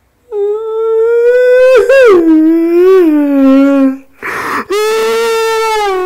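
A man howling like a dog: a long wavering howl that slides down in pitch, a sharp breath in, then a second howl that starts near the end.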